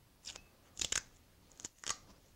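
Masking tape being peeled off its roll and torn by hand, in several short rasping bursts.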